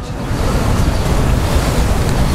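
Wind buffeting the camera's microphone: a loud, steady rush of noise, heaviest in the low end.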